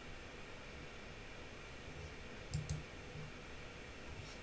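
Faint steady room hiss with a low hum, and two soft, short clicks about two and a half seconds in.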